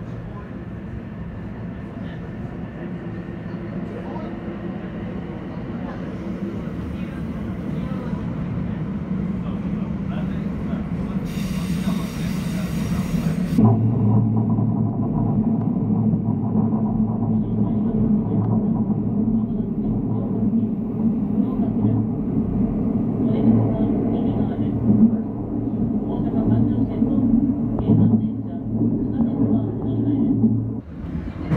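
JR West electric commuter train heard from the front cab, running through a tunnel and gathering speed, the motors and wheels on the rails growing steadily louder. A brief hiss about eleven seconds in lasts two seconds, and after it the rumble is heavier.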